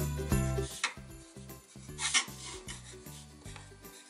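Coloured pencil scratching across paper in a few short strokes, over soft background music.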